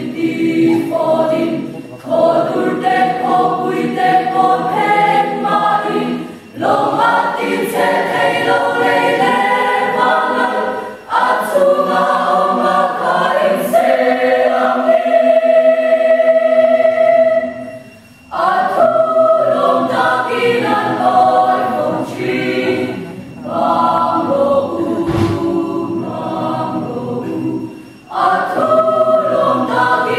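Mixed choir of young men and women singing a sacred song in phrases, with short breaks between them and one long held chord about halfway through.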